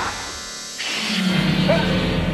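Horror film score: after a brief lull, a sudden loud musical sting comes in just under a second in, over a sustained low drone.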